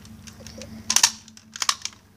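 Plastic of a Nerf Longstrike CS-6 toy blaster cracking and snapping as a person stands on it: a cluster of sharp cracks about a second in and another near the end, with parts inside the blaster breaking.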